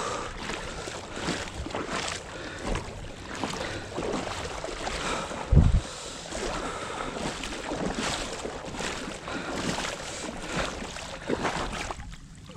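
Water sloshing and swishing in irregular strokes as a person wades through shallow floodwater. A single short low thump about halfway through.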